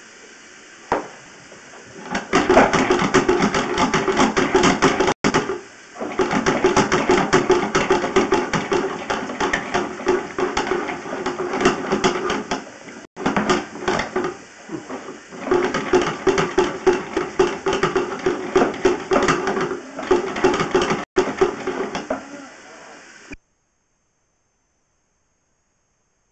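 Sewer inspection camera pushed along a PVC sewer line: a dense, loud crackling and rattling of the camera head and push cable, over a steady hum. It starts about two seconds in, drops out for an instant three times, and cuts off abruptly near the end.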